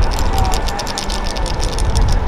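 Wind rumbling on the microphone, with rapid scattered clicks from wooden naruko clappers held by the dancers.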